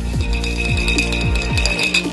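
Electronic background music: a deep kick drum that drops in pitch, hitting about three times a second, under a high held tone.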